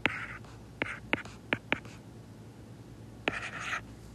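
Stylus writing on a tablet: about five sharp taps in the first two seconds and two short scratchy strokes, one at the start and one a little past the three-second mark.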